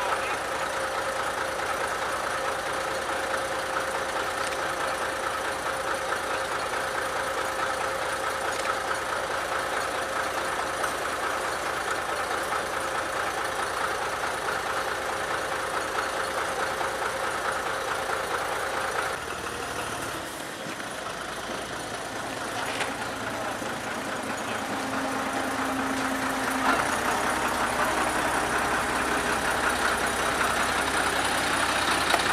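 Narrow-gauge diesel locomotive engine idling steadily, with a steady hum. About two-thirds of the way through the sound changes abruptly, and the engine grows louder toward the end.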